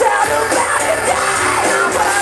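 Live rock band playing loudly on a festival stage, with vocals over the full band, heard from the audience.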